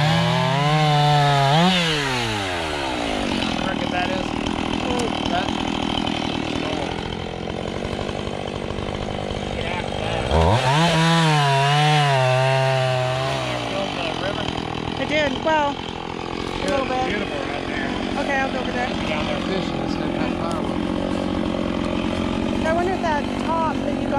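Gas chainsaw cutting a log into firewood rounds. The engine is at high revs for the first two seconds or so and drops back, then runs lower for several seconds. About ten seconds in it climbs steeply to high revs again, holds for about three seconds, then falls back to a steady lower speed.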